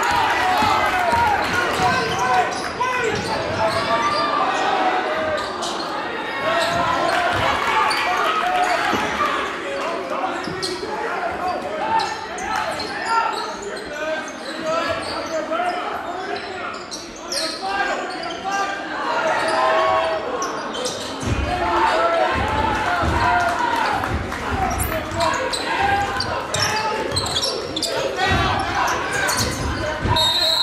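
A basketball being dribbled on a hardwood gym court, with the thuds of the ball heard among many overlapping crowd and player voices in the reverberant gymnasium.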